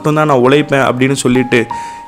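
A man narrating in Tamil over background music. Near the end the voice pauses and a few held music notes rise in pitch step by step.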